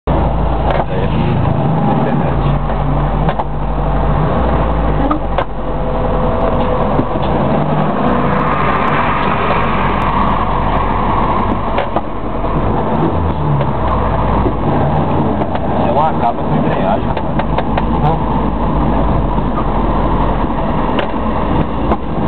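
Steady low rumble of car engine and road noise heard from inside a car's cabin in slow, congested traffic, with indistinct talk in the car.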